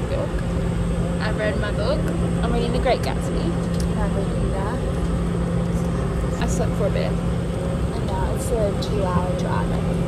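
Passenger airliner cabin noise: a steady low drone and rumble with a constant hum, with faint voices over it.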